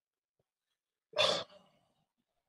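A single short, breathy exhale from a person, like a sigh, about a second in.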